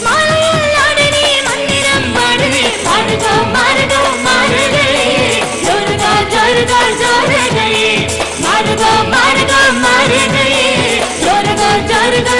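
A man and a woman singing a film-song duet into microphones over a live band with a steady beat. The vocal lines rise and fall, and the band plays without a break.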